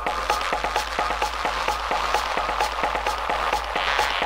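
Underground dark techno playing: rapid, evenly repeating clicking percussion over a steady low drone, with no heavy bass drum.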